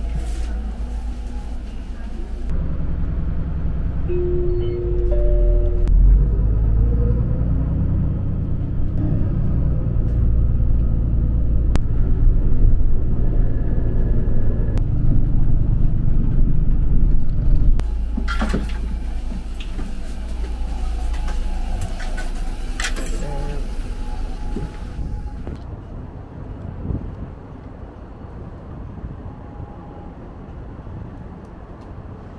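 Shuttle bus under way, heard from inside the cabin: a steady low engine rumble with road noise, louder through the middle and dropping off in the last few seconds.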